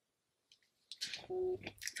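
Near silence for about a second, then a woman's faint breath and brief mouth and voice sounds, including a short hum, just before she speaks.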